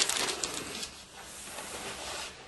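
Bible pages being handled: a quick cluster of soft paper rustles and light clicks in the first second, then fainter rustling.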